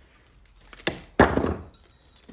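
Wire cutters snipping through a thin wooden floral stem: a short click, then a louder crack that trails off briefly.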